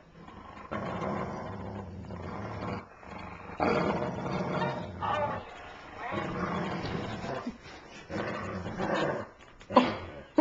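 Dogs growling through a tug-of-war over a plush toy: several long growls of a second or two each with short breaks between.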